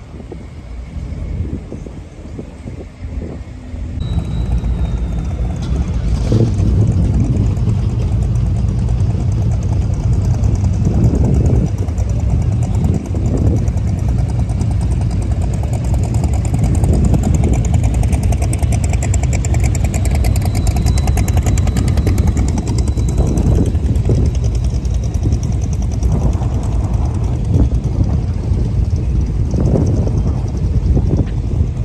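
Customized classic cars and pickups driving slowly past one after another, their engines running loud and low, with a few brief swells as drivers give throttle. The sound gets clearly louder about four seconds in.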